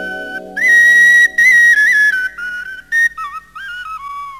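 Film score music: a breathy flute melody moving up and down in small steps, loudest in the first half, over soft sustained accompaniment notes that fade out.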